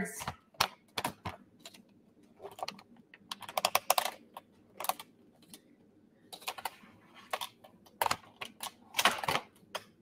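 Handling noise: irregular clicks, taps and knocks as a camera and its mount are moved and adjusted among tangled cords, in small clusters a second or so apart.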